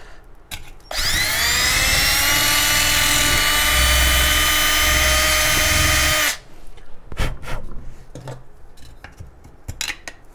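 Cordless drill with a small bit spinning up with a quickly rising whine about a second in, then running steadily as it drills into a thin-walled rocket body tube, and stopping about six seconds in. A few light handling knocks come before and after.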